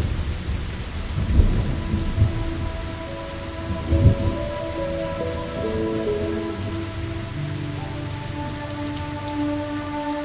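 Steady rain falling, with deep rolls of thunder rumbling through the first few seconds. Soft, long-held music notes come in over the rain from about three seconds in.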